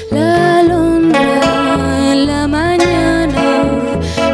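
Live acoustic music: a woman sings into a microphone over plucked acoustic guitar and double bass. Her voice comes in just after the start with long held notes that glide between pitches.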